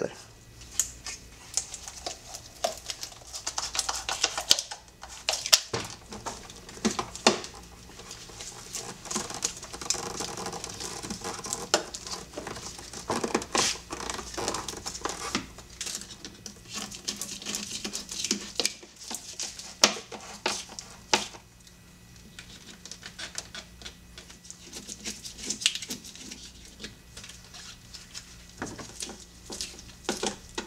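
Irregular clicks, knocks and rustling as gloved hands refit the air intake tube onto the throttle body and seat the intake parts during reassembly.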